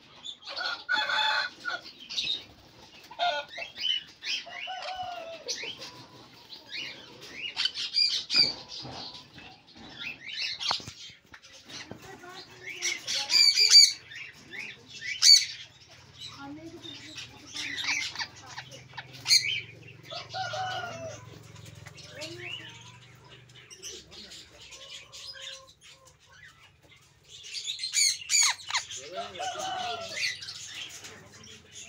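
A flock of sun conures calling in irregular bursts of high-pitched squawks. The loudest calls come about halfway through, and there is another dense burst near the end.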